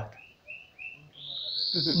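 A bird chirping: three short high chirps in quick succession, then a longer, slightly rising whistled note starting about a second in.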